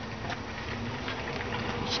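A steady low buzzing hum, with faint taps and rubbing from hands working a rubber PCV hose and valve into place.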